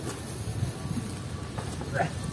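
Faint scuffing and shuffling on a gritty dirt path as a person in a padded turtle-shell costume rolls over from his back onto his hands and knees.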